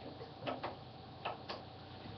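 Laptop keyboard keys tapped a few times: faint, scattered clicks.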